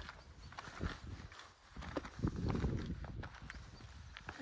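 A hiker's footsteps on a mountain trail while descending a ridge: a few irregular thuds with short sharp clicks.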